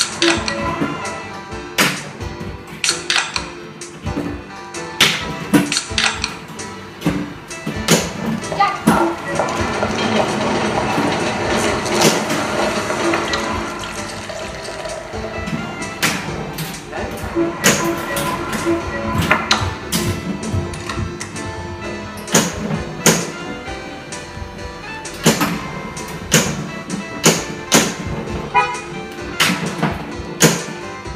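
Pinball machine in play: sharp clicks and knocks from the ball, flippers and solenoid-driven bumpers, scattered irregularly throughout, over music. The music thickens into a fuller, steadier passage from about eight to fifteen seconds in.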